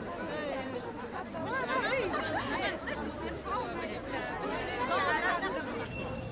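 Chatter of several people talking at once, overlapping voices with no single speaker standing out.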